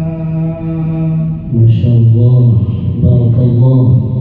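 A man reciting the Quran in slow, melodic tarteel style. He holds one long drawn-out vowel on a steady pitch, then after a brief break about a second and a half in, goes on with the next phrase at a lower pitch.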